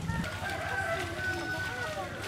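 A rooster crowing once: one long held call lasting about a second and a half.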